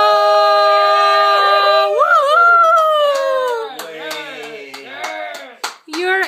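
A girl's singing voice holding a long, loud final note that jumps up about two seconds in, then falls away. Short calls from other voices and a few hand claps follow near the end.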